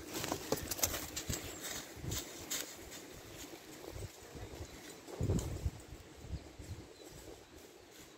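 Footsteps and scuffing on a leaf-strewn woodland path: a run of soft, irregular knocks, thickest in the first few seconds, with a louder brief sound about five seconds in.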